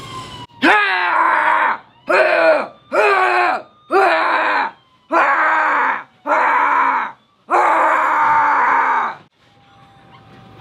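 A person's voice making seven loud, drawn-out cries, each sliding down in pitch, with short breaks between them and the last the longest.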